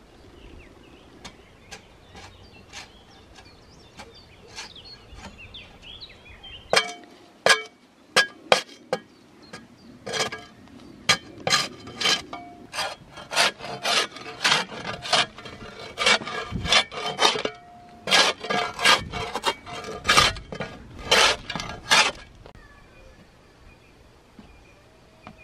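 A mattock blade chopping into roots and earth: a long run of sharp strikes with a brief ringing metal tone, about two a second in places, starting about seven seconds in and stopping near the end. Faint scattered ticks come before it.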